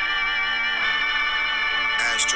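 Recorded music from a rap song playing from a phone's speaker, with held, layered pitched notes at a steady level.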